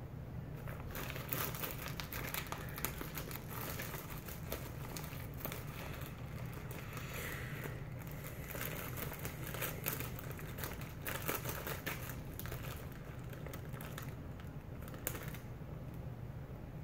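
Plastic pepperoni bag crinkling as slices are pulled out of it, in irregular crackles over a steady low hum.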